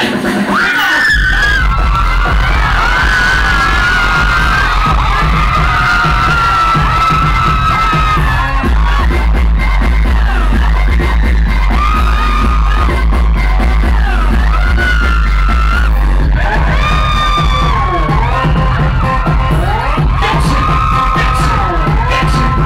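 Loud live music played through a PA, with heavy bass that comes in about a second in and runs on under a sliding melody line.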